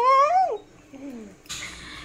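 A toddler's high-pitched whining cry: one rising wail that breaks off about half a second in.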